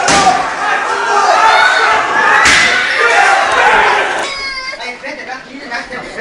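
Panicked shouting and screaming from several people, broken by loud slams at the start and about two and a half seconds in, as a door is banged or struck. The din drops after about four seconds to fewer, higher voices.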